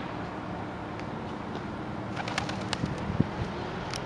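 Feral pigeons, with a brief low coo late on and a quick run of sharp clicks and taps a little past halfway, over steady outdoor background noise.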